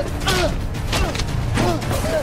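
Fight-scene soundtrack: an electronic score full of short swooping tones, over a run of punch and kick impacts and whooshes.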